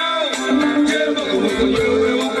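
Live band music: a man singing into a microphone over a steady beat of kpanlogo hand drums and other instruments.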